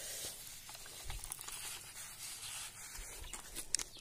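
Hand pressure garden sprayer letting out a fine mist of pesticide solution: a soft, steady hiss, with two low thumps about one and three seconds in.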